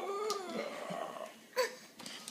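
A toddler's strained vocal grunt of effort while heaving up a heavy twelve-pack of bottles, held for about a second with its pitch rising then falling. A short sharp knock follows about one and a half seconds in.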